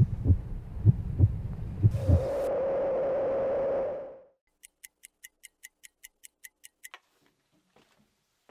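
Film soundtrack sound design: deep thumps under a low drone, then a held tone that fades out. After it comes a run of about a dozen even, sharp ticks, about five a second, ending in one sharper click.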